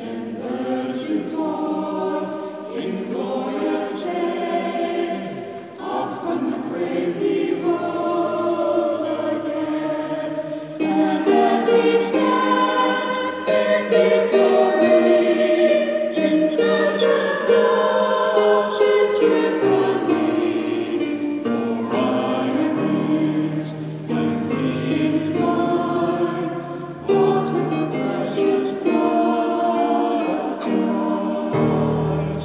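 Mixed choir of women's and men's voices singing a sacred piece in a cathedral, in long sustained phrases with short breaths between them, growing louder about eleven seconds in.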